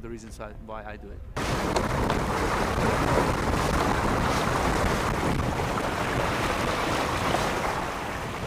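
Wind on the microphone and water rushing and splashing along the hull of a small Mini-class racing yacht under sail in choppy sea. The steady noise starts suddenly about a second in.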